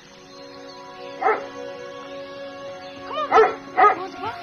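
A Labrador retriever barks three times, once about a second in and twice close together near the end, over steady sustained soundtrack music.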